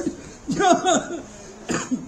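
A man's voice through a handheld microphone: a short voiced outburst about half a second in, then a sharp cough-like burst near the end.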